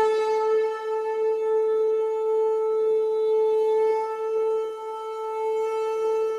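One long, steady blown note on a horn-like instrument, held at a single pitch, dipping slightly in loudness near the end.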